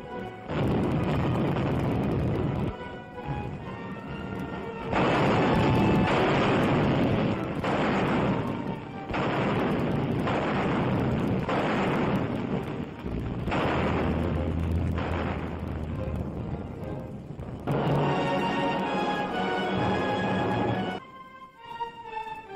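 Battle noise of explosions and gunfire in long stretches with brief breaks, over music that comes through clearly when the noise stops near the end.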